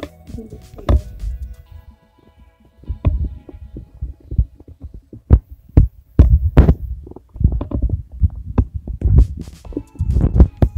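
Paper being folded and its creases pressed down against a wooden desk by hand: irregular dull thumps and crinkles, coming thicker in the second half.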